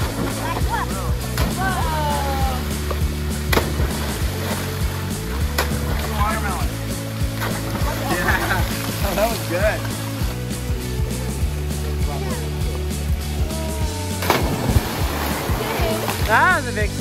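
Background music over children's shouts and the splashes of kids jumping and diving into a swimming pool, with a few sharp splash hits.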